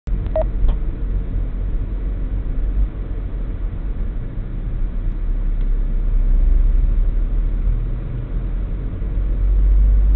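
Steady low rumble of a car driving slowly along a city street, heard from inside the car, with a brief beep just after the start.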